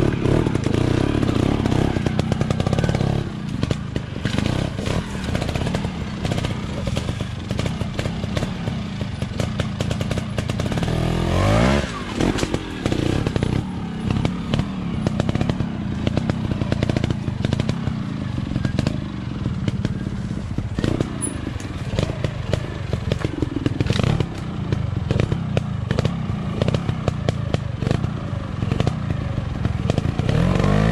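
Trials motorcycle engine running at low revs with short throttle blips and sharp knocks as it is ridden slowly over roots and logs. The revs rise steeply once, about twelve seconds in.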